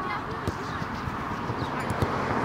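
Outdoor soccer training ground: faint distant voices of players over a steady background, with a sharp thud of a ball being kicked about half a second in and another near the end.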